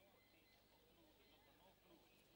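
Near silence, with faint, indistinct voices murmuring in the background.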